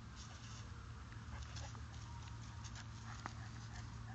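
A dog panting in quick, quiet breaths.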